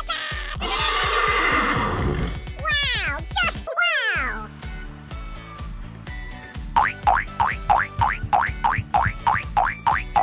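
Children's background music with a steady beat, and a recorded horse whinny, wavering and falling, about three seconds in. In the last few seconds comes a quick run of short, falling animal calls, about three a second.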